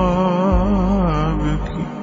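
Arabic devotional nasheed: a solo voice holds a long, ornamented melismatic note with a slow wavering pitch over a steady low drone, easing off near the end.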